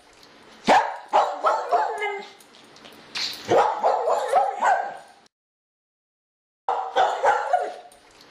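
A dog barking over and over in quick runs of short barks. The sound cuts to dead silence for about a second and a half just after the five-second mark, then the barking starts again.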